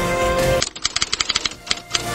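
Background music cuts off about half a second in, and a typewriter-key sound effect clicks rapidly for about a second and a half as on-screen text is typed out.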